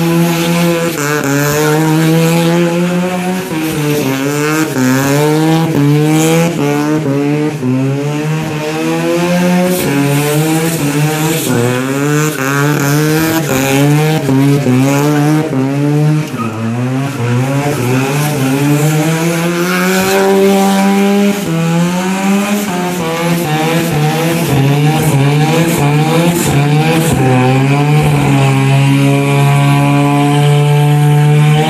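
Turbocharged 13B bridgeport rotary engine in a Toyota KE25 Corolla held at high revs through a long burnout, the revs bouncing up and down about once a second as the rear tyres spin and squeal.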